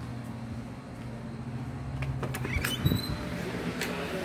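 Footsteps and a door being opened as someone steps from a patio indoors: a few clicks, a short rising squeak and a thump about two to three seconds in, over a steady low hum.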